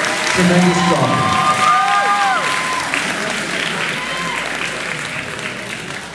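An audience applauding, with a few voices shouting over the clapping in the first two seconds or so. The applause dies down toward the end.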